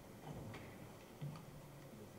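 Low hall room tone with a few faint, scattered clicks and taps, the loudest about a second and a quarter in.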